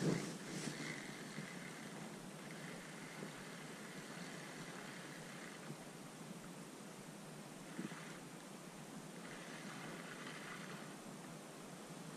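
Faint steady outdoor background hiss, with brief knocks and rustles of the fishing rod and gloved hand being handled in the first second and once more near the end.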